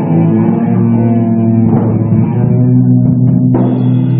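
Live sludge metal band playing: distorted electric guitar and bass holding long, ringing chords, with little drumming, and a new chord struck about three and a half seconds in.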